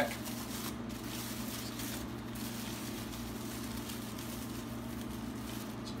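Steady low hum and even background hiss of a workshop room, with no distinct sound event.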